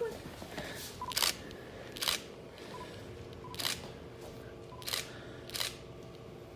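A camera shutter clicking several times, short sharp clicks roughly a second apart.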